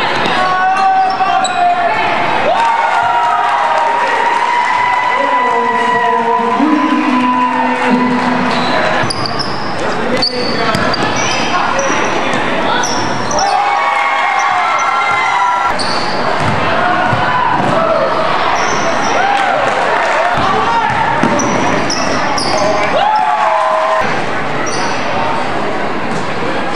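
A basketball game on a hardwood gym floor: a ball being dribbled and bounced, and sneakers squeaking in short high chirps. Voices and shouts from players and crowd run underneath throughout, echoing in the large hall.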